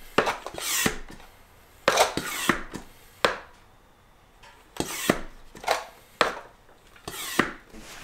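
Hand plunger pump of an Oregon 88-400 lube-oil extractor worked up and down, about seven short noisy strokes with a pause near the middle. The strokes draw a vacuum in the tank to suck the oil out of a lawnmower engine through the dipstick tube.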